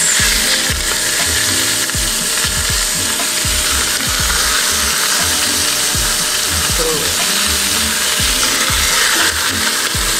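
Chicken pieces sizzling as they fry in hot olive oil on a bed of sliced onions in a stainless steel pot over medium-high heat, a steady hiss.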